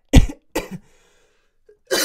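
A man coughing: two sharp coughs in quick succession, then a pause, and another cough starting near the end.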